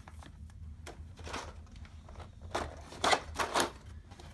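Handling noises of board game pieces being packed into their box inserts: soft rustling and scraping of cardboard and books, then a louder clatter of plastic about three seconds in as a plastic tray of miniatures is set into the box.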